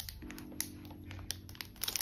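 Soft lofi background music with a held chord, under a few light clicks and crinkles from a plastic-wrapped pack of card-protector pages being handled.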